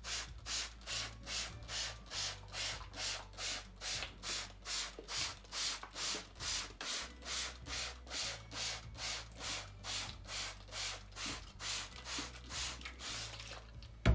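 Trigger spray bottle squirting water onto a seed tray in quick, even pumps, about three short hisses a second. The pumping stops shortly before the end.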